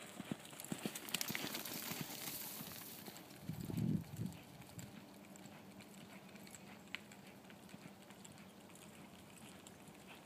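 Hooves of a ridden horse thudding softly on arena sand as it lopes past close by, then fading as it moves away. A short low rumble about three and a half seconds in is the loudest sound.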